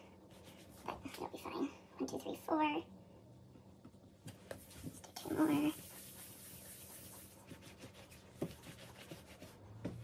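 Hands rolling and shaping soft bread dough on a countertop, with light taps and rubbing. Two short voice-like sounds stand out above it, about two and a half and five and a half seconds in.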